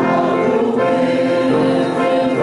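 Church congregation singing a hymn together, sustained notes with music underneath.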